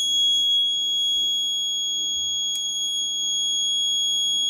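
Piezo alarm buzzer of a DIY MQ-2 gas and smoke detector sounding one steady, unbroken high-pitched tone. It has been set off by gas from a lighter held at the MQ-2 sensor.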